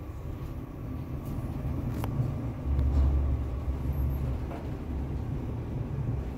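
Toshiba passenger elevator car travelling upward: a steady low rumble of the ride, swelling louder about three seconds in. A light click about two seconds in.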